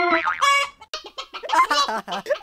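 The last note of a cartoon jack-in-the-box's keyboard tune, then a high voice giggling in short, choppy bursts.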